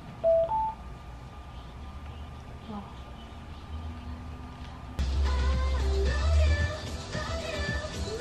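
Bose SoundLink Mini II speaker sounding a short two-note rising tone about half a second in. At about five seconds a pop song with singing and heavy bass suddenly starts playing loudly through it.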